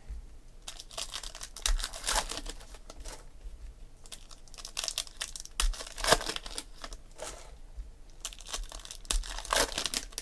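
Foil trading-card pack wrappers crinkling and tearing as they are handled and ripped open, in several bursts of crinkly rustling.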